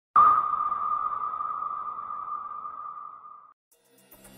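A single steady high-pitched tone, like a ping, that starts suddenly and fades out over about three and a half seconds.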